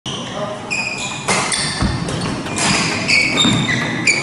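Court shoes squeaking on a wooden badminton court floor in short, high squeals, again and again, with sharp racket hits on the shuttlecock during a doubles rally.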